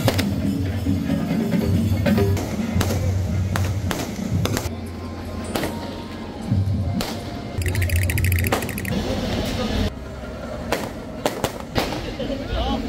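Loud bass-heavy music and voices in a busy festival crowd, with several sharp cracks scattered through and a brief rattle about eight seconds in.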